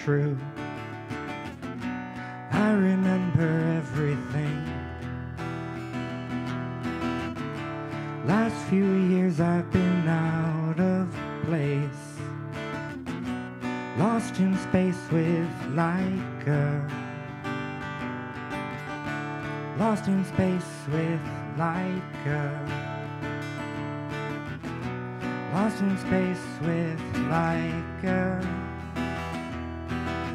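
Acoustic guitar playing a slow song live through a PA.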